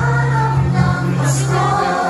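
Music with a choir singing held notes over a steady bass.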